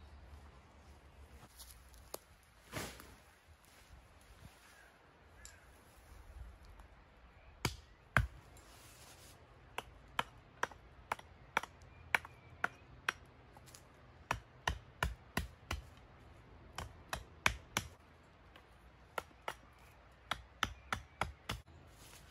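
A mallet knocking tent pegs into the ground: from about eight seconds in, short runs of sharp strikes, two to three a second, with pauses between the runs. Before that there is only faint rustling.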